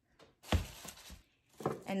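A single thump of a grocery item set down on a table, followed by lighter clattering as packages and cans are moved about.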